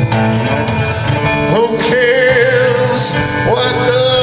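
Live band playing a slow blues-rock song, with a male singer holding long, wavering notes over the band.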